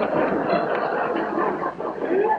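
Live studio audience laughing, a dense, even wash of many voices, on a 1939 radio broadcast recording.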